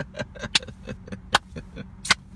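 Steady low hum of a car idling, heard inside the cabin, with soft rapid mouth sounds and two sharp clicks.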